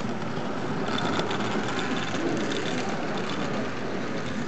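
Model freight train running along the layout track: a steady rumble of wheels on rail that grows louder about a second in, with light clicking over it.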